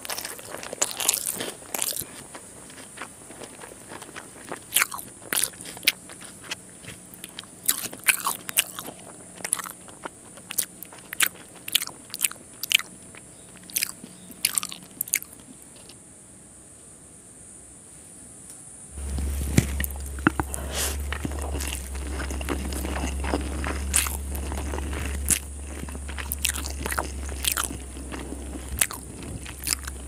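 Close-miked eating sounds: chewing with sharp, crunchy bites, from rice eaten with fish curry, fried fish and raw onion. A low steady hum comes in about two-thirds of the way through.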